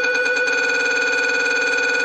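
Electronic beep tone in a sped-up funk track, held as one steady, unbroken high tone.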